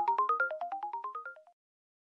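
Short outro music jingle: quick pitched notes in repeating rising runs, about a dozen notes a second, fading away and stopping about one and a half seconds in.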